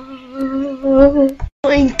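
A cartoon voice holding a long hummed note with a slight wobble in pitch, like a thinking "hmmm", cut off about a second and a half in, then a short falling vocal sound near the end.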